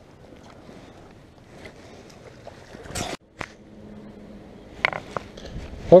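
Faint wind-and-water hiss around a small fishing boat, with a sharp knock about three seconds in. After a brief dropout there is a steady low hum, and two more knocks come near the end.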